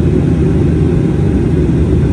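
Airliner cabin noise heard at a window seat: a loud, steady, deep roar of engines and rushing air, with the landing gear lowered on the approach.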